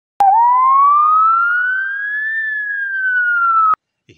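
A single loud whistle-like tone that glides steadily upward for about two seconds, then sinks a little, starting and cutting off abruptly with a click at each end.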